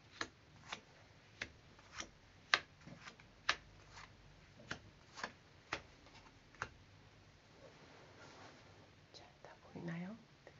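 Tarot cards being dealt face-up onto a wooden table, each landing with a sharp click, about two a second, stopping after about six and a half seconds. After that there is a faint rustle of the hands settling beside the spread.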